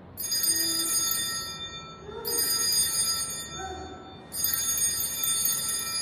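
Altar bells (sanctus bells) rung three times about two seconds apart, each ring a bright shimmer that fades away: the bells marking the elevation of the chalice at the consecration.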